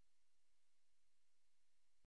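Near silence, with only a very faint, even hiss.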